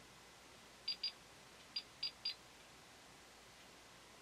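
Cajoe Geiger counter beeping once for each detected count: five short, high beeps at irregular intervals, two about a second in and three close together around two seconds. The count rate sits at about 65–79 counts per minute under the UVC lamp, above the 30–60 CPM background the owner expects; he suspects the UVC light is affecting the GM tube.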